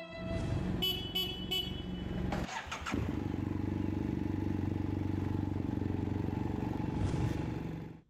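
BMW R18's 1800cc boxer twin running, with three short horn toots about a second in. After a brief dip near the middle, the engine settles into an even, rapid pulsing beat, blips once near the end and fades out.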